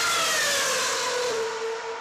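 Race car going past at speed, its engine note falling in pitch as it passes and fading away.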